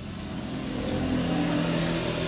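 A vehicle engine humming steadily, growing gradually louder.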